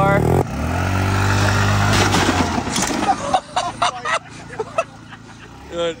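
A small scooter engine runs steadily, then dies away about three seconds in. A scatter of sharp knocks and clatters follows.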